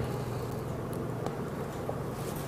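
A steady low hum with a faint background hiss and a couple of faint ticks.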